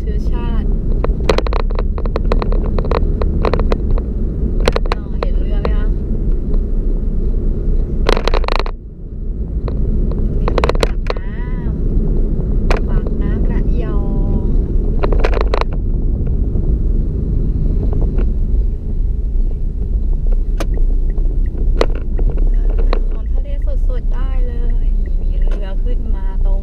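Car interior noise while driving at town speed: a steady low rumble of engine and tyres on the road, with frequent small clicks and knocks. Voices are heard at times over it.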